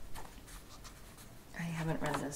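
Paper pages of a hardcover book being turned by hand, with a brief rustle just after the start and a fainter one later. A soft woman's voice begins speaking near the end.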